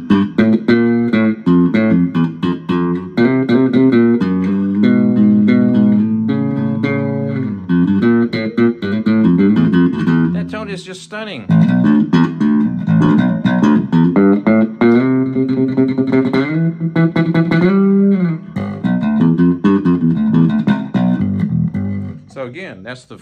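Squier Vintage Modified Jaguar Bass Special SS short-scale electric bass played through a small guitar amp, a bass line of plucked notes on the forward (neck) pickup alone with the tone control turned all the way up. The playing breaks briefly about halfway through, then carries on.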